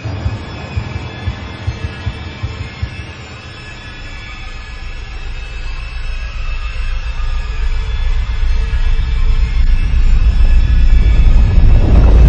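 Eerie horror-film style soundtrack: a deep rumbling drone with irregular low thumps in the first few seconds. It then swells steadily louder, peaking near the end.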